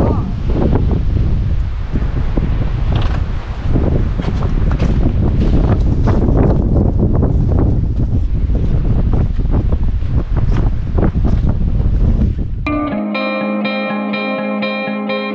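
Wind buffeting the camera microphone, with scattered short clicks and knocks. About a second before the end it cuts off suddenly to a plucked guitar music track.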